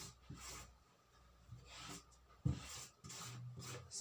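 Faint scratching and rubbing of a marking tool drawing a freehand line on fabric, in a few short strokes, with a single soft knock about two and a half seconds in.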